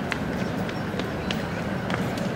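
Street sound dominated by a steady low rumble, with a Tatra T3 tram rolling slowly up to a stop. A few short, sharp clicks cut through.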